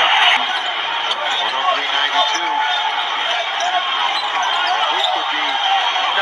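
Steady crowd noise in a basketball arena, with a ball bouncing on the court and voices mixed in underneath.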